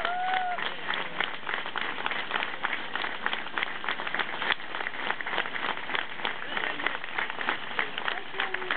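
A crowd applauding: many hands clapping in a dense, steady patter.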